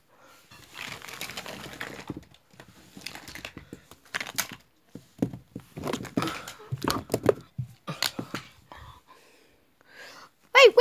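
Irregular rustling and crinkling with scattered light clicks and knocks, the sound of things being handled close to the microphone.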